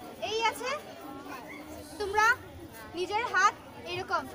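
Young girls' voices: three loud, high-pitched calls with sharply bending pitch, about half a second, two seconds and three seconds in, over a low background of group chatter.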